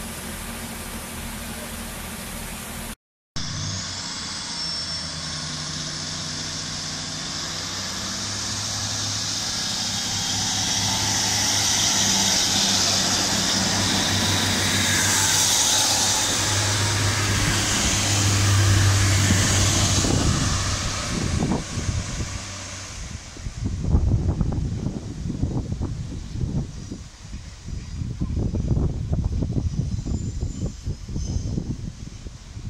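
A diesel multiple unit, a class 142 Pacer coupled to a class 150, pulling out of the station and passing close by. Its diesel engines give a steady low hum as it gets under way, loudest between about twelve and twenty seconds in, then fading as the train moves off down the line.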